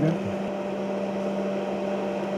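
A steady electrical hum: a low tone with a fainter higher one, unchanging throughout.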